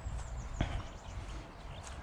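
Footsteps of a walker on a dirt track, uneven low thuds with a sharp click about half a second in. A few short high bird chirps sound near the start.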